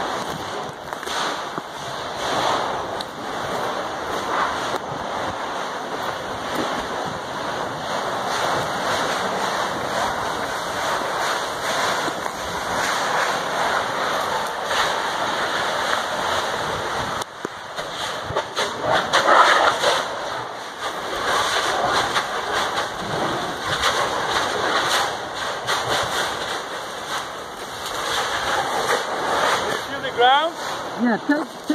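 Steam and volcanic gas rushing out of cracks in the ground at a Kilauea eruptive fissure: a steady, loud hiss with irregular crackles through it.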